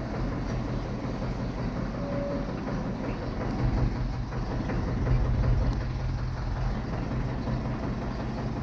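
Diesel engine of a Valmet tractor carrying a sugarcane loader, running steadily with a low, even hum that swells slightly about five seconds in.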